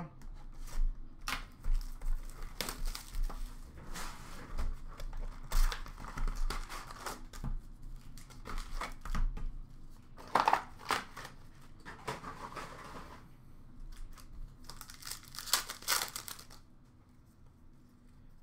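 Upper Deck hockey card box and packs being opened by hand: pack wrappers torn and crinkled, with short clicks and taps of packs and cards being handled on a counter. The louder stretches of tearing and rustling come about ten seconds in and again about fifteen seconds in, and it goes quieter near the end.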